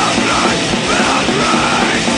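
Crust / d-beat hardcore punk recording playing: a dense wall of distorted guitar and distorted bass over drums, with shouted vocals.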